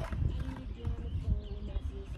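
Skateboard wheels rolling over a concrete lot, a low uneven rumble.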